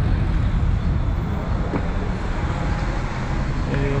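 Steady low background rumble, the kind that road traffic makes, with a single spoken word near the end.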